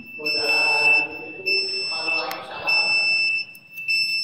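A person's voice talking faintly away from the microphone, with a steady high-pitched whine running under it that briefly drops out now and then.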